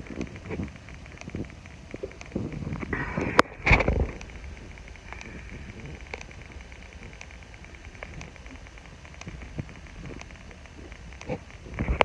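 Rustling and light knocks of bodies and clothing moving on a floor and of the handheld phone being handled, with a louder burst and a sharp click about three to four seconds in, then a faint steady background.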